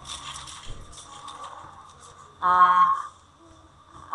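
A woman's voice: one short, held hesitation sound, an "uhh" at a steady pitch, a little past halfway. Faint breath noise on a headset microphone comes before it.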